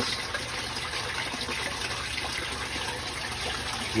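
Water running and splashing into a fish-tank sump from a float valve pushed down by hand, which opens the valve on a gravity-fed rainwater hose. A steady flow.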